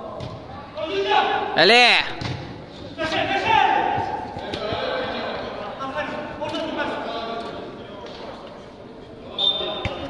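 Players shouting to each other during a five-a-side football match, with sharp knocks of the ball being kicked, all echoing in a large hall. The loudest shout, about two seconds in, rises and falls in pitch.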